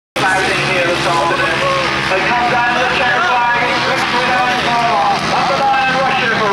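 Race-meeting sound from a grasstrack event: motorcycle engines running, mixed with indistinct voices, steady and loud. It cuts in after a brief gap at the very start.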